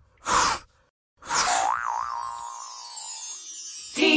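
Cartoon logo-intro sound effects: a short whoosh, then about a second in a bright falling shimmer with a tone that wobbles up and down and then holds, ringing on for about two seconds.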